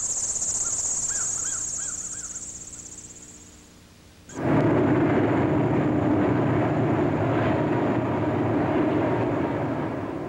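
High-pitched insects trilling steadily, with a bird chirping a few times, fading out over the first four seconds. Then a steady loud rumble starts suddenly and runs on.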